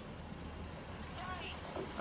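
Class 153 single-car diesel multiple unit approaching at low speed, its underfloor diesel engine giving a low, steady rumble.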